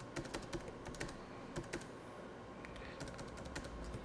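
Typing on a computer keyboard: a quick, irregular run of faint key clicks, with a short pause about halfway through.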